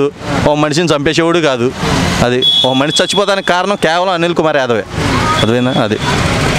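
A man talking in Telugu into a close microphone, with a short high steady beep sounding twice, about two seconds in and again near the end.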